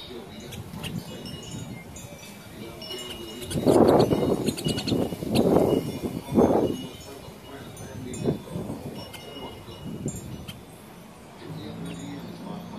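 Wind chimes tinkling, with short high ringing notes scattered throughout. About four to seven seconds in, three louder low rushing bursts cover them.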